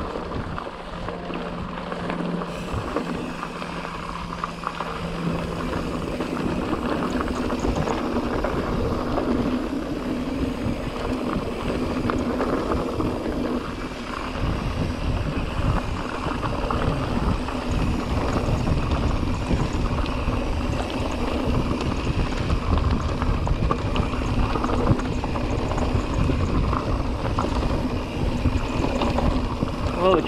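Mountain bike, a Pivot Trail 429, rolling fast over rocky, loose dirt singletrack: steady crunching tyre noise with constant rattling clicks from the bike and low rumble from wind buffeting the microphone.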